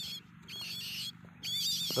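A wild bird singing: three short, high, warbling phrases of about half a second each, over a faint low steady hum.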